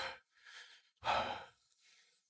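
A man's breaths, with no words: a short sharp exhale, a faint breath, then a longer, heavier sigh about a second in.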